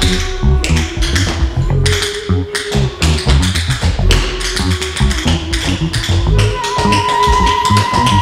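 Instrumental hip-hop beat with a bass line and a held synth tone, overlaid by quick, crisp tap-dance shoe taps.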